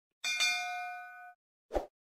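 Notification-bell sound effect: a single ding that rings for about a second and fades, then a short pop near the end.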